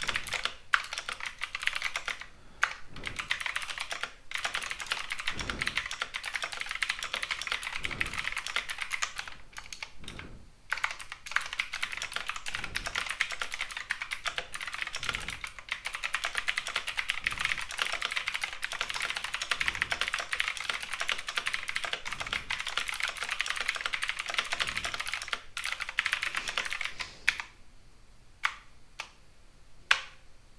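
Fast typing on a computer keyboard: rapid runs of key clicks with a few brief pauses, thinning out and nearly stopping near the end.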